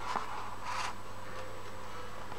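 Steady low electrical hum, with two short scraping rustles about half a second apart near the start.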